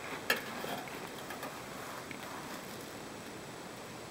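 Faint handling noises from checking an engine oil dipstick: a single sharp click about a third of a second in, then light scraping and rustling as the dipstick is handled and read.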